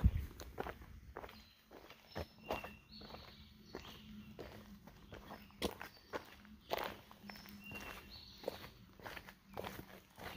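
A hiker's footsteps on a damp dirt forest trail, walking at an uneven pace of about one or two steps a second.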